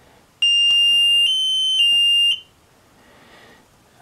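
A Gizmo Engineering T4 digital timer's buzzer gives one loud, steady high beep of about two seconds while its illuminated start button is held down to cancel the count. The pitch steps up slightly for about half a second in the middle, then the beep cuts off.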